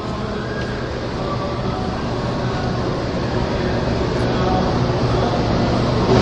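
Steady low rumbling background noise with a faint hum, growing gradually louder; no clear speech.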